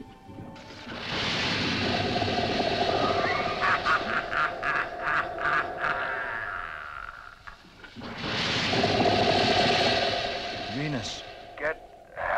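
Science-fiction sound effects of a jetmobile's hover jets: a hissing jet noise with a steady whine, which rises about a second in and comes again later. In the middle, a rapid even stutter of ray-gun zaps sounds over the jet noise.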